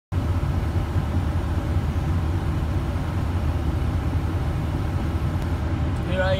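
A semi truck's diesel engine running steadily, heard from inside the cab as an even low rumble.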